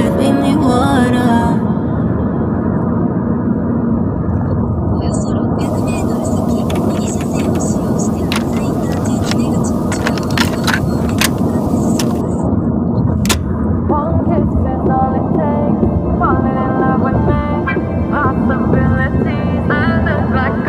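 Steady low road and engine rumble of a moving taxi heard from inside the cabin, with music playing over it; a melodic, voice-like line comes in during the last few seconds.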